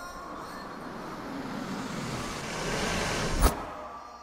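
A car approaching, its noise swelling steadily for a few seconds. It ends in one sharp, loud bang about three and a half seconds in.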